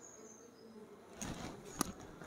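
Faint buzzing like a flying insect, joined in the second half by a few soft clicks and one sharper click near the end.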